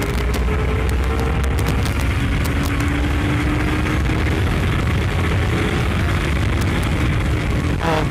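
Honda CBR250RR parallel-twin engine under hard acceleration, its pitch climbing, dropping at an upshift about two seconds in, then climbing again. Heavy wind rush on the microphone at speed largely covers it.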